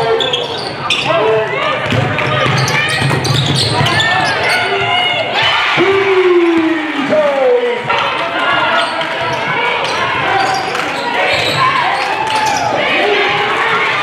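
A basketball being dribbled on a hardwood gym floor, with players' and spectators' voices and shouts echoing in the large hall.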